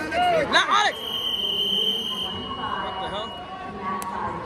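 Loud shouting voices in the first second. Then a long, steady, high-pitched tone holds for about two and a half seconds as the wrestling is stopped, over gym crowd noise.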